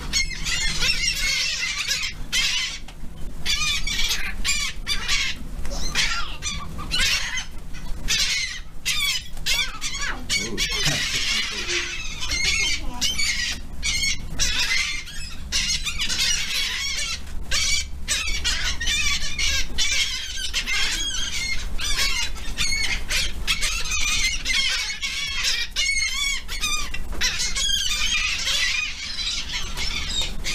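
A flock of seagulls calling close by, many overlapping squawks in a dense, constant chorus.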